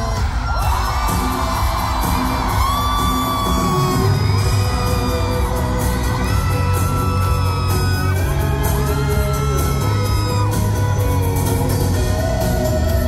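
Live pop-rock band playing at full volume, with drums, bass, electric guitars and violin, and a crowd whooping and yelling over the music.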